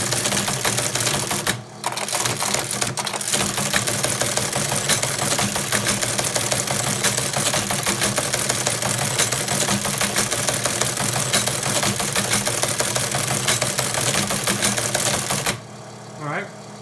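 Teletype Model 15 printing a computer's output: a rapid, continuous mechanical clatter of type strokes, carriage returns and line feeds over the steady hum of its motor. There is a brief pause a little under two seconds in, and the printing stops shortly before the end, leaving the motor hum.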